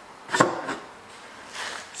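Hand-work noises from fitting a rubber air spring into a car's rear suspension: a sharp knock with a brief squeak about half a second in, then a fainter rubbing sound near the end.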